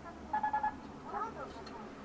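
An electronic beeper sounding four short, quick beeps of one steady pitch about half a second in.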